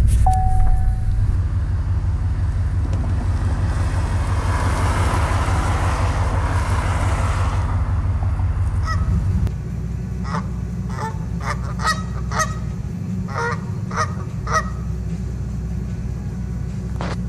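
A car running, heard from inside the cabin as a steady low rumble for about the first nine seconds. Then Canada geese honk in a quick run of about a dozen short calls over a lower hum.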